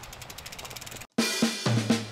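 A bicycle's freewheel ticking faintly and fast as the bike is wheeled along. About a second in, the sound cuts out briefly, then background music starts with a drum-kit beat and bass.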